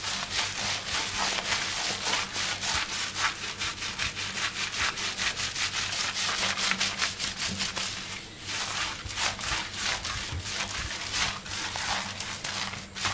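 Fingers scrubbing shampoo lather through wet hair and scalp in fast, even rubbing strokes, about four or five a second, with a brief lull about eight seconds in.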